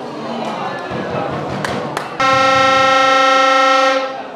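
Spectators shouting, then, just past halfway, a loud blast of a hand-held air horn: one steady note held for about a second and a half that cuts off abruptly.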